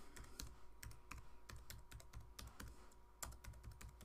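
Faint typing on a computer keyboard: an irregular, quick run of key clicks, with one slightly louder keystroke a little after three seconds in.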